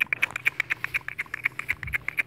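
An animal's rapid chattering call: a fast, even run of short, sharp, high notes, about a dozen a second.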